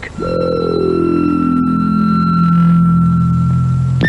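Title music of a Cold War British civil-defence public information film, which the presenter calls terrifying: a steady high tone held above a low tone that slides slowly downward, both cutting off near the end.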